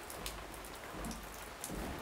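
Faint, steady hiss of background noise with a few faint ticks, in a pause between speech.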